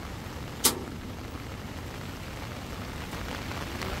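Steady rain falling, with one sharp knock less than a second in.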